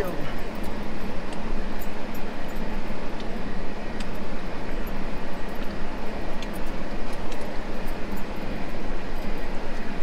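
Cab noise inside a 2022 Ford Ranger crawling over a rough, rocky dirt trail: tyres on loose rock and gravel under a steady low hum, with scattered small knocks and rattles.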